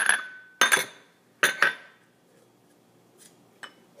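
Glass bowl being put down on the counter: three sharp clinks, each with a short ring, in the first two seconds, then two faint ticks near the end.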